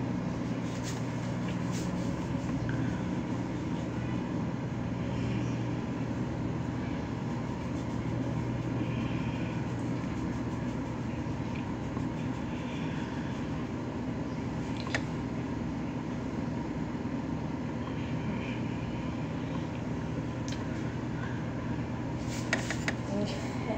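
A steady low hum with a rushing noise, like a fan or other running machine, with a few faint clicks.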